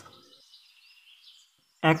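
A short pause in the speech filled only by faint background hiss, with a man's voice starting again near the end.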